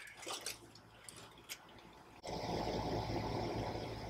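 A few faint handling ticks, then a steady low hiss that starts abruptly about two seconds in.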